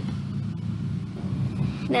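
Steady low background rumble and hum at an even level, with no distinct events.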